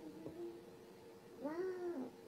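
A short whining vocal call about one and a half seconds in, its pitch rising and then falling, over a faint steady hum.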